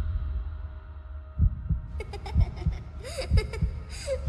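Trailer sound design: the low rumble of a boom fades, then a slow heartbeat-like pulse of paired low thumps sets in, about one pair a second. Crackling, static-like bursts join it from about halfway.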